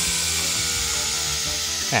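OSUKA OCBC 511 cordless brush cutter's electric motor running with a steady whine while its speed button is worked, under background music.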